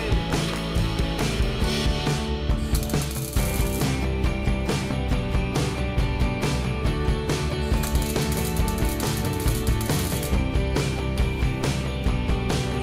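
MIG welder tack-welding a steel patch panel into a car's rust-repaired wheel arch, an irregular crackle in short repeated spurts, with music underneath.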